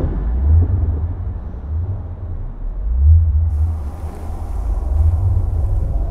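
A deep low rumble that swells and fades in slow waves, with a faint hiss coming in past the middle.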